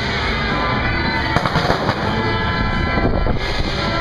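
Firecrackers crackling rapidly in two bursts, one about a second in and one near the end, over loud festival procession music.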